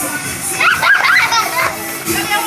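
A group of young children shouting excitedly as they play together, the high voices loudest about a second in, with music playing underneath.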